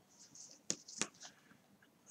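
Small scissors snipping crochet cotton yarn to cut off the thread end: a soft rustle of yarn, then two sharp faint clicks of the blades about a second in.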